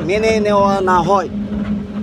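A man speaking in a raised voice, one drawn-out phrase that ends a little over a second in, over the steady low hum of an idling vehicle engine.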